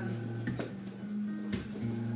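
Acoustic guitar played between sung lines, its chord ringing with fresh strums about half a second and a second and a half in.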